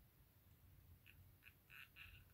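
Near silence: quiet room tone, with a few faint, short squeaks clustered in the second half.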